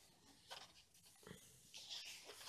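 Faint rustling of paper sheets as pages of a 30 × 30 cm scrapbooking paper pad are lifted and turned, in a few short rustles.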